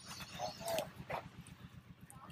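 Faint, indistinct voices in short snatches, over a steady low pulsing hum.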